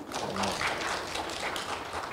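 A small audience clapping: a dense patter of many light claps that eases off slightly.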